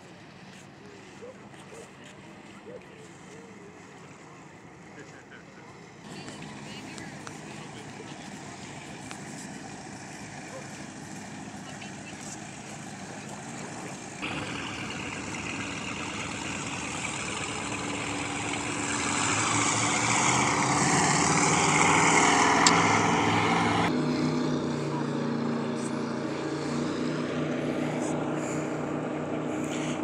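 Motorboat engine passing on the lake, growing louder over several seconds to a peak about two-thirds of the way through, then easing off.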